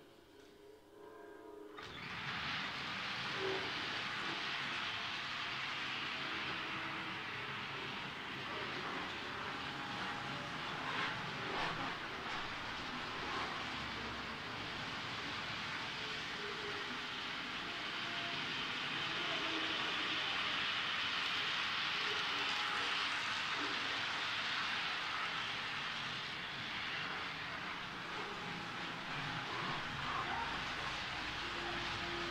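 Model electric train running on layout track: a steady whirring of its small motor and the rattle of its wheels on the rails, starting about two seconds in.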